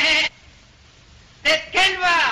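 A single voice crying out in short, high-pitched bursts: one right at the start and two close together near the end, the last sliding down in pitch.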